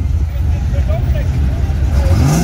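Square-body Chevrolet pickup's engine running as the truck rolls slowly past, a steady low rumble, with faint voices in the background.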